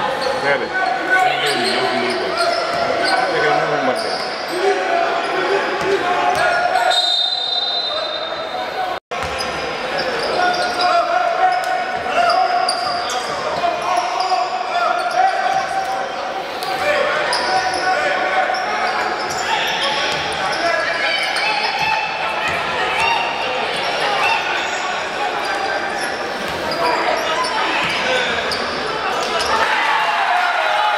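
A basketball game in a sports hall: the ball bouncing on the court, with players' and spectators' voices echoing around the hall. The audio drops out for an instant about nine seconds in.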